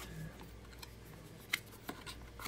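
Cardboard product box being opened by hand, its lid and inner flaps handled quietly, with two small sharp taps near the end.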